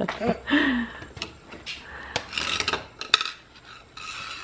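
A screwdriver scraping and tapping against a stone hearth: short scratchy rasps and a few sharp clicks.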